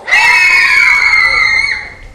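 Child actors in animal costumes screaming together in fright as they scatter across the stage: one sudden, loud, high scream held for nearly two seconds, sagging slightly in pitch before it fades.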